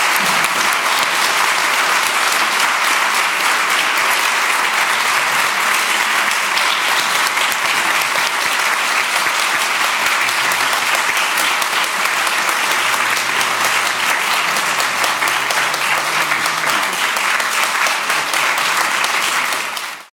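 Audience applauding: a steady, dense clapping from a large crowd, cut off suddenly at the very end.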